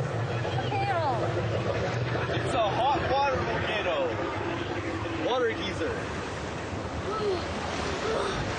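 Rushing water around a round raft on a whitewater rapids ride, a steady noisy wash, with riders' short wordless whoops and laughs every second or two.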